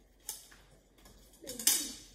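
A pen scratching briefly on paper, then a louder, longer scrape about a second and a half in as a metal ruler is slid across the sheet of squared paper.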